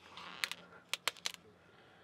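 Pages of a large hardcover book being turned by hand: a soft paper rustle, then a handful of short, sharp paper flicks and snaps between about half a second and a second and a half in.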